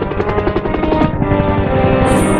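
Music soundtrack with sustained instrumental tones, over the fast, even chop of a helicopter's rotor.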